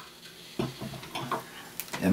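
Faint small clicks and light rustling from a sparkling-wine bottle being handled over a glass, with one sharper click near the end.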